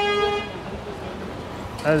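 A vehicle horn held on one steady note in busy street traffic, cutting off about half a second in, with the traffic going on after it.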